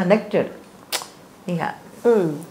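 A woman's speech trailing off into a pause, broken by one sharp click about halfway through and a brief vocal sound shortly before the end.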